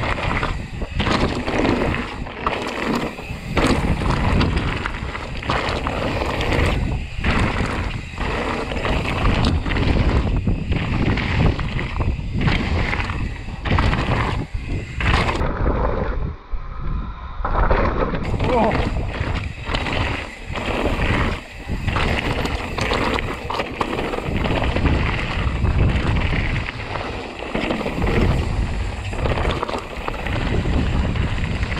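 Mountain bike descending loose slate scree: tyres crunching and skittering over the stones, with the bike rattling over rough ground and wind on the microphone. About halfway through the hiss and rattle ease off for a couple of seconds before the rough noise resumes.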